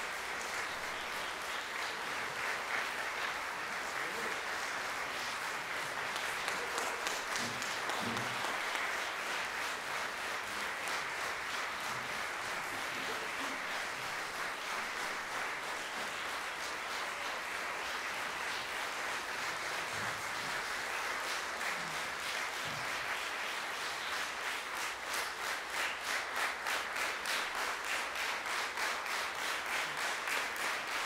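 A packed hall's audience applauding. Near the end the clapping falls into rhythmic unison, at about two to three claps a second.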